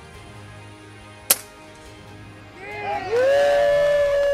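A single sharp air rifle shot about a second in. Near the end, music swells in and holds a loud, steady chord.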